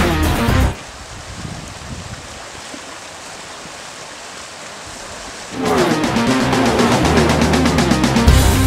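Guitar music stops abruptly under a second in, leaving a steady rush of flowing river water for about five seconds before the music comes back in.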